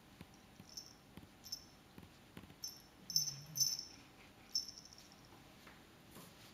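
A cat playing with a toy mouse on a string: a series of about six short, high-pitched sounds, the loudest two a little past the middle.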